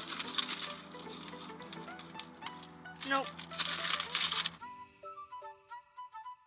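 Paper taco wrapper rustling and crinkling as it is unfolded, with a couple of louder crackles a little after the midpoint, over soft background music. The rustling stops about three-quarters of the way in, leaving only the music.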